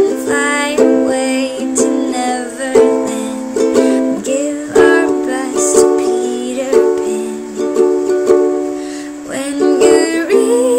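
Ukulele strummed in chords, with a strong accent about once a second.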